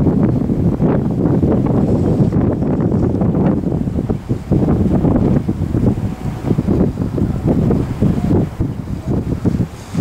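Wind buffeting the camera's microphone: a loud, gusty low rumble that rises and falls in uneven gusts, easing briefly about four seconds in and again near the end.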